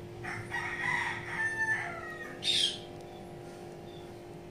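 A rooster crowing once, a pitched call of about two seconds, followed by a short, higher-pitched burst about two and a half seconds in, over soft steady background music.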